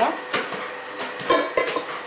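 Stainless-steel colander and pots clattering, with a few sharp knocks of metal and a wooden spoon, as freshly drained spaghetti is handled.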